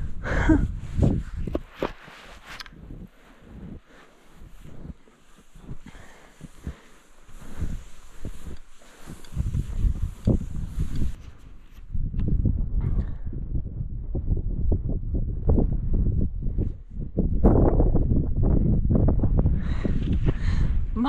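Cross-country skis and poles sliding and crunching through deep fresh snow, a rough, irregular run of strokes that grows louder and more continuous about halfway through.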